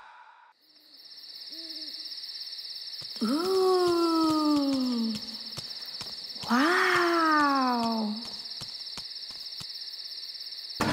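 Two long owl hoots, each about two seconds and falling in pitch, over a steady high cricket trill. A fainter short call comes about two seconds in.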